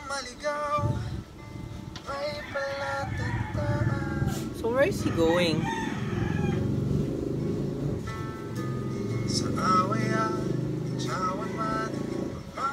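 A song with acoustic guitar and a man's singing voice plays steadily. A rooster crows with a rising call about five seconds in.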